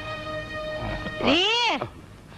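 Film background music with held, steady notes, then about a second in a loud, drawn-out vocal cry whose pitch rises and then falls away.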